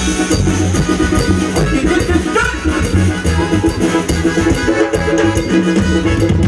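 Latin dance music from a band played loud over large loudspeakers, with a steady bass and drum beat.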